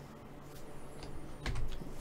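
A few light clicks of a computer keyboard in a quiet room, with a soft low thump about a second and a half in.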